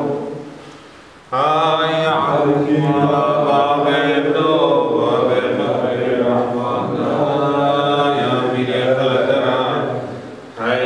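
A man's voice chanting a Yazidi religious hymn in long, drawn-out, wavering phrases. The chant fades in the first second and comes back sharply about a second and a half in.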